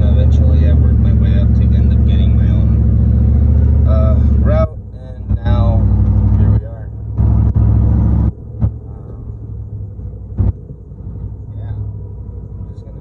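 A vehicle's engine running, heard as a steady low hum inside the cab. The hum cuts off abruptly about four and a half seconds in, comes back for two short stretches, and after about eight seconds gives way to a quieter low rumble.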